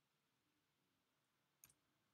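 Near silence with a single faint click about one and a half seconds in, the click that advances the presentation to the next slide.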